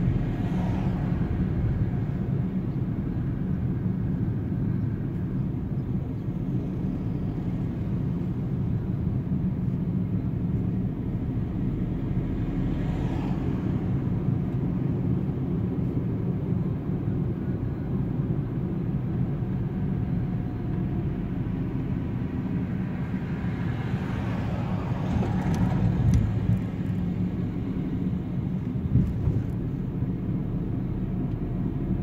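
Steady engine and road noise inside a small car's cabin as it drives along a city street, with a few passing vehicles swelling briefly and fading.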